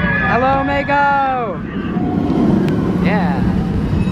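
A person's voice: one long held call lasting about a second that falls in pitch at the end, then a short rising-and-falling call about three seconds in, over steady wind noise on the microphone.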